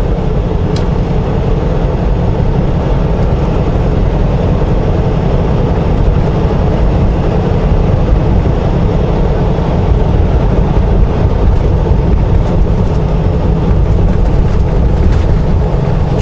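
Steady engine and road noise inside the cab of a conventional semi-truck cruising at highway speed, a constant low rumble with no change in pitch.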